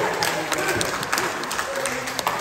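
Applause from a small group of people clapping, with some voices mixed in.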